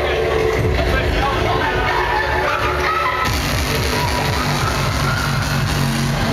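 Loud drum and bass / hardcore DJ mix playing over a club sound system, heavy bass under a dense, distorted top end. The mix turns brighter about halfway through.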